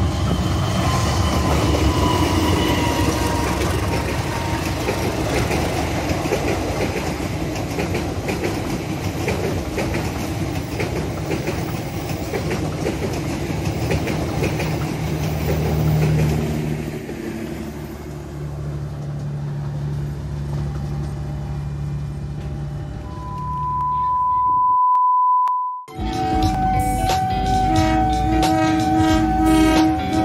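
A CC201 diesel-electric locomotive and its passenger coaches pass at close range with steady engine rumble and wheel-on-rail clatter. Near the end the train noise fades, a steady electronic tone sounds for about two seconds, and then music with a beat starts.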